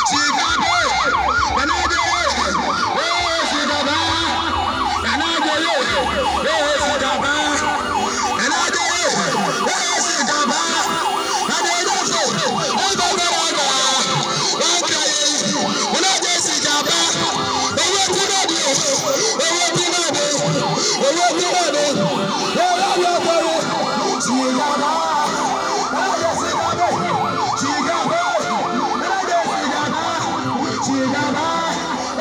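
Several vehicle sirens sounding together, each in quick, repeated rising-and-falling glides that overlap steadily, with voices underneath.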